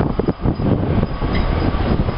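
Diesel locomotives hauling a long freight train of loaded gravel hopper wagons: a heavy, continuous low rumble of engines and rolling wagons.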